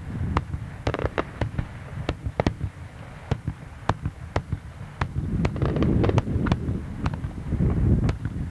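Daytime aerial fireworks shells bursting overhead in a rapid, uneven string of sharp bangs, about two or three a second, over a low rumble.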